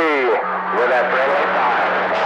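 CB radio reception on channel 28: a station's voice coming through steady static, not clear enough to make out, with a steady low tone coming in about half a second in.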